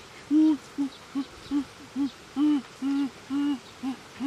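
A man's voice making repeated short hooting 'oh' sounds, about nine in quick succession, a few drawn out longer than the rest.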